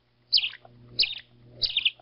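A bird calling, giving the same short chirp about every two-thirds of a second, three times. Each call is a quick run of notes that falls in pitch. A faint low hum lies underneath.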